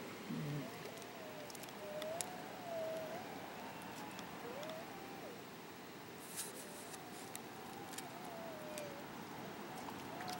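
Steady rush of a rocky river flowing over shallow riffles. A faint wavering high tone comes and goes in the background, with a few light clicks.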